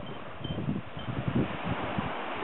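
Wind buffeting the camera's microphone in irregular gusts over a steady hiss.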